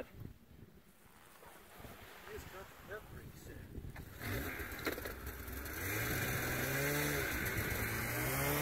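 A two-stroke mountain snowmobile engine comes on about four seconds in and runs at low speed as the sled is eased forward a little, its pitch rising and falling slowly. A faint voice is heard before it.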